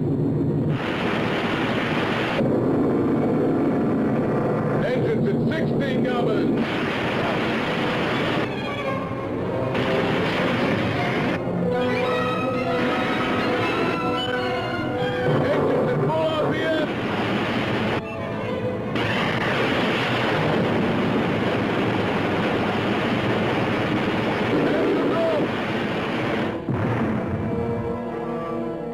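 Science-fiction film soundtrack: a dense, steady rumbling spacecraft noise with warbling, gliding electronic tones and music over it. The high end thins out briefly several times along the way.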